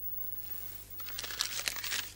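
A parking ticket in its plastic bag being pulled from under a car's windscreen wiper and handled, crinkling in irregular crackles for about the last second, over a faint steady hum.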